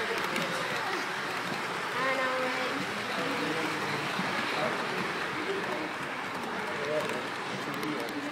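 Background chatter: several people talking at once in a busy room, with no words standing out.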